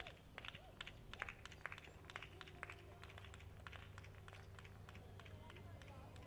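Faint, irregular clicks of a horse's hooves cantering on sand arena footing, thickest in the first three seconds or so, over a low steady hum.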